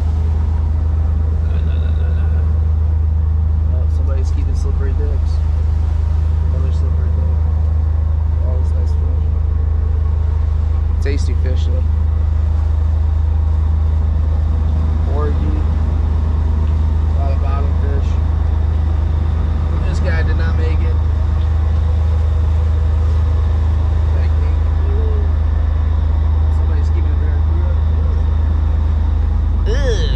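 Steady low drone of the boat's engines running, with faint voices in the background and a few short clicks and knocks.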